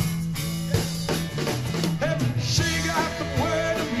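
Live rock band playing through a PA system: a steady drum-kit beat with electric guitars, and a sung lead vocal coming back in near the end.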